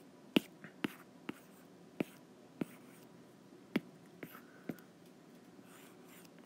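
Stylus tapping on a tablet's glass screen while drawing: about eight short, sharp taps at irregular intervals.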